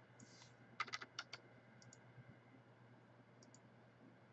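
Faint computer keyboard keystrokes: a quick run of about five strikes around a second in, then a few lighter clicks later.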